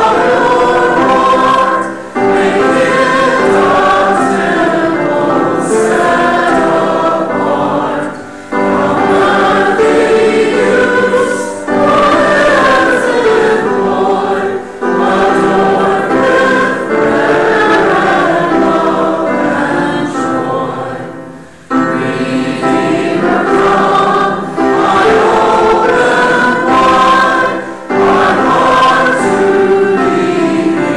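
Church choir and congregation singing a hymn together, phrase by phrase, with short breaths between lines and a longer break about two-thirds of the way through.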